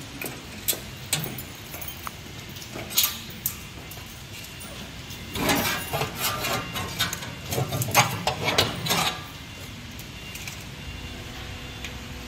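Stainless steel discharge funnel of a multihead weigher being worked loose and lifted out by hand: a few light metal clicks, then a run of clinking and rattling from about five to nine seconds in.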